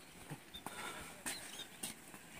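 Quiet outdoor background with a few faint scattered clicks and brief high chirps.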